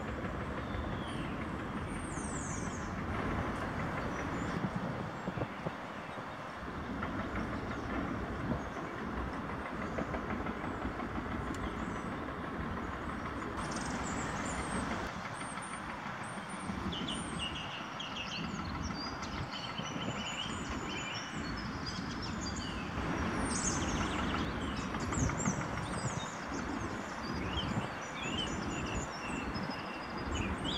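Diesel lorry engine running steadily at low revs, with birds chirping and whistling over it, the birds busiest in the second half.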